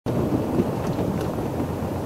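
Steady low rumble of wind buffeting an outdoor microphone.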